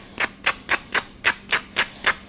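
Sandpaper rubbing the cut end of a PVC pipe in quick back-and-forth strokes, about four a second, deburring the edge to get it ready for gluing.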